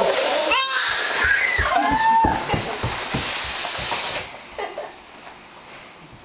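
Plastic laundry basket carrying two small children being pushed across the floor, its bottom scraping with a steady hiss that stops about four seconds in, with children's high voices over it.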